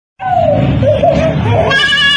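A young child's high, wavering cry that begins abruptly and becomes a clearer, held wail near the end.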